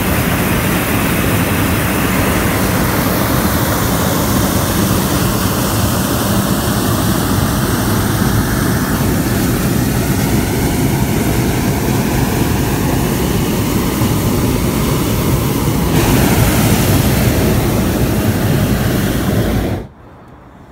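Hot air balloon's propane burner firing in one long blast, a loud steady roar that cuts off suddenly near the end.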